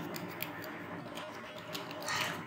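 Computer keyboard typing: a quick, irregular run of light keystroke clicks.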